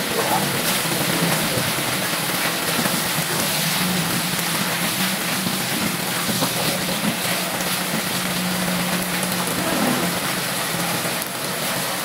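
Thick sweet-and-sour sauce boiling in a pan: a steady bubbling hiss, with a faint low hum underneath.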